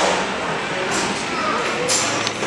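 Busy indoor hall ambience: a murmur of distant voices, with a short sharp click near the end.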